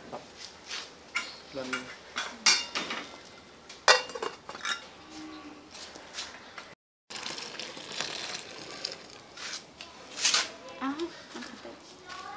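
Metal cookware clinking and knocking: an aluminium pot and its lid being handled, with a string of irregular sharp clanks. The sound drops out briefly just before the seventh second, then the clinking carries on.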